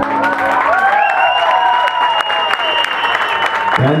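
Audience applauding and cheering, dense clapping with a long high whistle held over it.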